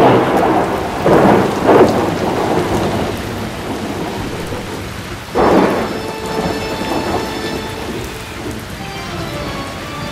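Thunderstorm: steady rain with thunderclaps, three in the first two seconds and another about five and a half seconds in, each dying away over a second or so.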